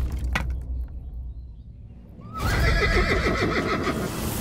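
A horse whinnying loudly, starting suddenly a little over two seconds in, after a low rumble and a single sharp knock that die away in the first second.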